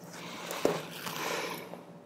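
Faint rustling of a cloth uterus model being handled as a needle holder drives a suture through it, with one small click about two-thirds of a second in.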